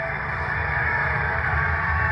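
Televised arena sound played through a TV's speaker: a steady crowd roar with music underneath.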